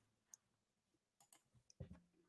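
Near silence: room tone with a few faint, short clicks, the last and strongest near the end.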